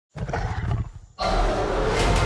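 A gorilla's deep, pulsing roar from film sound design, fading just after a second. Then comes a sudden loud hit into a dense, sustained wash of sound.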